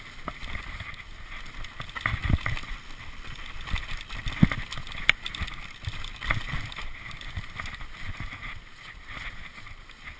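Mountain bike riding fast down a dirt forest trail: continuous tyre rumble and rattle of the bike, with wind on the microphone. Several hard thumps as the bike hits bumps, the loudest about two and four and a half seconds in, and a sharp click just after five seconds.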